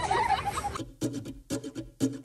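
Excited high-pitched voices and laughter of a group playing with a small child, cut off abruptly under a second in, followed by a much quieter stretch with a few faint clicks.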